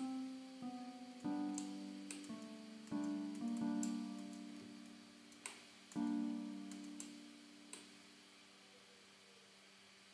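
Three-note chords from the Xpand!2 software instrument auditioned in FL Studio's piano roll, struck several times over the first six seconds with a soft plucked, keyboard-like tone, each left to ring and fade; the last one dies away a couple of seconds before the end. Faint mouse clicks fall between the chords.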